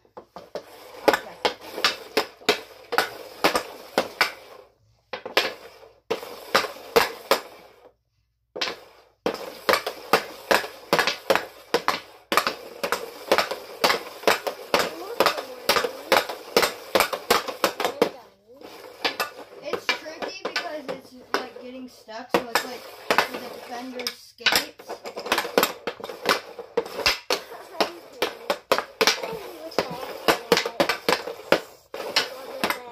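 CCM Ribcor Trigger 4 Pro composite hockey stick blade tapping a green training puck back and forth on plastic dryland tiles: rapid clicking and clacking, several taps a second, with two short pauses.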